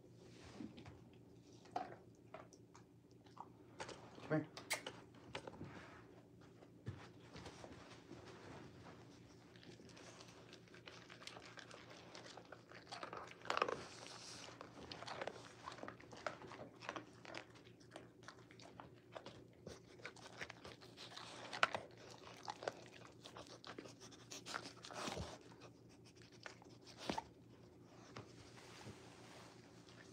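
A Rottweiler chewing and crunching food eaten from a hand, in irregular bites, over a steady low hum.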